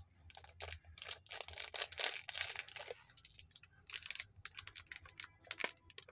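A small crinkly plastic snack wrapper being handled and squeezed by a small child's hands. There is a dense run of crackles from about one to three seconds in, then scattered single crackles.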